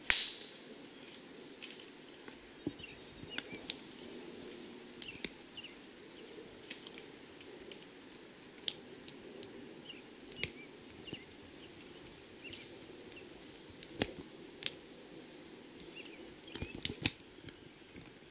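A driver striking a golf ball off the tee: one sharp, loud crack at the very start, with a brief ring-out after it.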